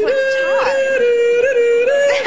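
A man imitating a recorder with his voice, holding high notes that step down about halfway through and back up near the end.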